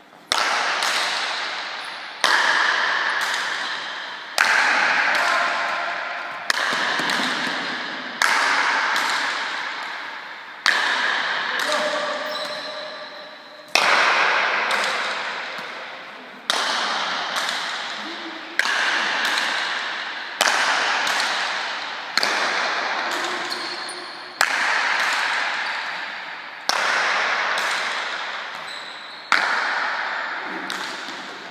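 Paleta cuir rally: the leather ball cracking off wooden paletas and the court wall about every two seconds, each strike echoing long in the indoor court.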